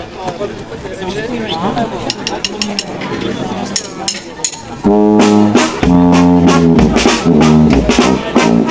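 People talking in a crowd, then about five seconds in a brass band starts up loudly with horns, tuba and clarinet.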